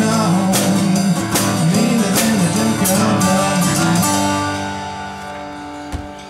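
Taylor 214ce acoustic guitar strummed in a bluesy rhythm, then a final chord struck about four seconds in and left to ring and fade: the close of the song. A short click comes just at the end.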